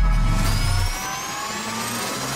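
Animated-logo intro sound effects: the tail of a deep boom fades out in the first second under several tones that rise steadily in pitch, a whine building up like a riser.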